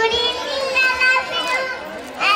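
A small boy's voice through a microphone, in long, held, sing-song tones.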